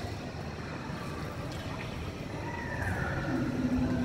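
Steady low rumble of exhibit-hall background noise, then a drawn-out low call starting about three seconds in, a dinosaur sound effect played for the moving animatronic dinosaur display.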